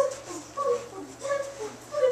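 Children's voices making short, repeated high-pitched vocal sounds, about two or three a second, in a steady rhythm like machine noises.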